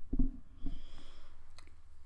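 Handling noise on a desk microphone: a short low bump against it about a quarter second in, then a soft rustle as a plush teddy bear is moved close in front of it.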